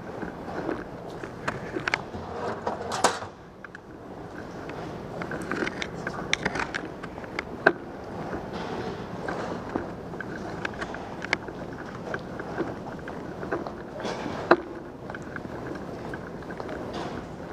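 A bicycle moving across the stone floor of a subway station concourse: irregular clicks and rattles from the bike over a steady background hum, with a sharper, louder noise about three seconds in.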